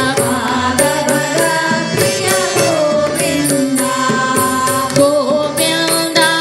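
A Hindu devotional bhajan to Vishnu performed live: group singing over a harmonium's held notes, with dholak and tabla drums keeping a steady beat.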